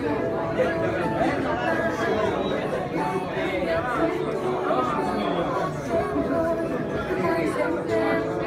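Many people talking at once: a room full of indistinct, overlapping conversation.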